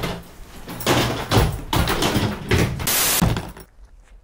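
A run of knocks, thuds and clatter as a hard-shell plastic suitcase is handled and carried through a door, with a short burst of hiss about three seconds in.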